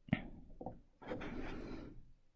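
Faint handling noises at a craft table: a light tap, a couple of small clicks, then about a second of soft rubbing as the clay piece on its plastic sheet is moved across the table.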